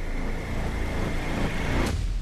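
A steady low rumble with a faint, steady high tone over it, and a sharp click near the end.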